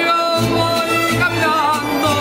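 A mariachi band playing live: a male singer over strummed guitars, with low bass notes coming in about half a second in.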